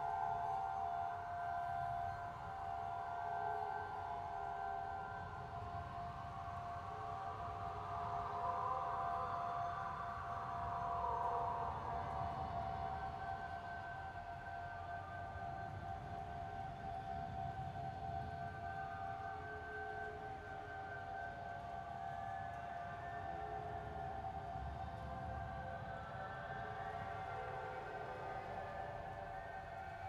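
Eerie ambient drone: several steady held tones over a low rumble, with a higher wavering tone that swells and fades around the middle, like a distant moaning siren.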